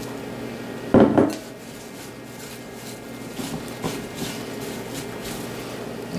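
Sliced apples being tipped from a glass bowl into a stoneware pie dish, with a loud clatter about a second in, then quieter shuffling and light knocks as a hand spreads the slices in the dish.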